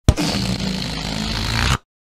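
Cartoon sound effect: a sharp hit followed by about a second and a half of steady, noisy rushing over a low hum, which cuts off abruptly.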